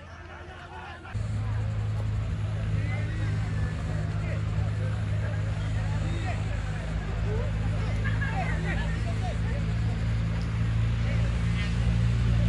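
A steady low engine hum that sets in about a second in and runs on evenly, under the distant chatter of a crowd of spectators.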